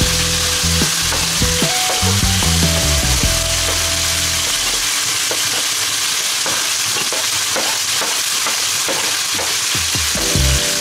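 Chopped onions and chicken sizzling in hot oil in a pan while being stirred with a wooden spatula. From about halfway on there is a run of quick scrapes and taps of the spatula in the pan.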